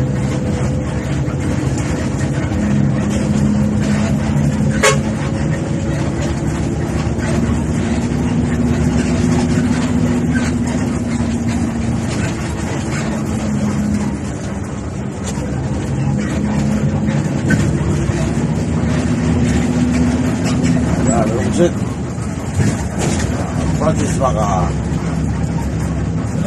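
A Philtranco coach's diesel engine running as the bus drives at highway speed, heard from inside the driver's cab. The engine note rises and falls as the speed changes, with a sharp click about five seconds in.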